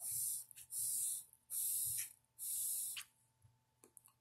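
A joint being lit with a lighter and puffed on: four short hisses of about half a second each, coming in quick succession. It is struggling to light and draw properly.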